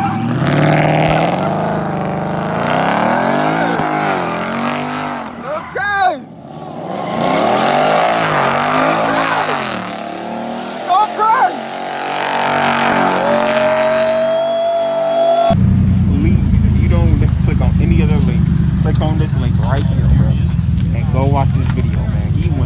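Ford Mustang 5.0 V8 doing a burnout in its own tyre smoke, the engine revving up and down again and again as the rear tyres spin. About 15 seconds in, the sound changes to a steady, deep engine rumble.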